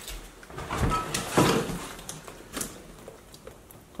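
Cardboard box being pulled open by hand, with scattered rustles, scrapes and light knocks.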